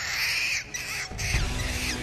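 Film soundtrack: a capuchin monkey's harsh screeching calls over music, followed by a low rumble in the second half.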